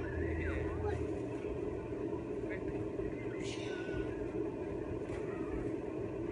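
Faint, brief voices of people at a distance over a steady low rumble.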